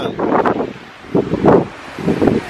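Green tent fabric rustling in several short bursts as it is pulled down and gathered, with wind on the microphone.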